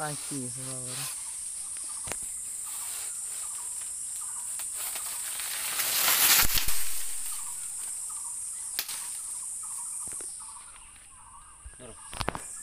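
Banana plant's stalk and leaves rustling and cracking as a bunch is pulled down by hand: one long noisy swish that swells and peaks about six seconds in, with a few sharp snaps, over a steady high insect drone.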